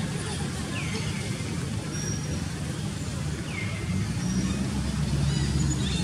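Steady low rumble of a vehicle engine running nearby, with two short, high, falling chirps about a second in and about three and a half seconds in.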